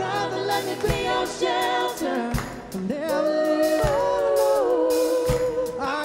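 Live worship band with singers: voices hold a long note over drums, guitars and piano, the held note stepping down partway through, with a few drum hits.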